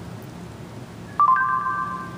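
Google voice search chime from an Android phone's speaker, about a second in: a short electronic note followed by a held chord of steady notes. It signals that the phone has stopped listening and is processing the spoken query.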